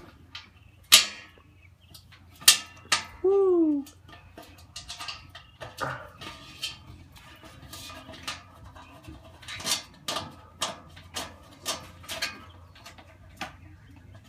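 Sharp clicks and knocks of metal grill parts and hardware being handled and fitted during assembly, the loudest about one and two and a half seconds in. A short pitched sound falls in pitch about three seconds in.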